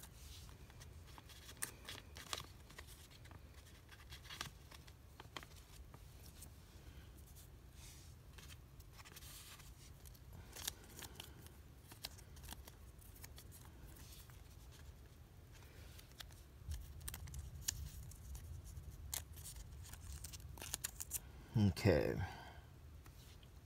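Fingers handling a small paper postage stamp and picking at its backing: faint, scattered soft paper clicks and rustles over a steady low hum.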